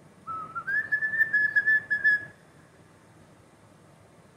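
European starling whistling: a short lower note that steps up into one higher held note of about a second and a half, with a slight waver.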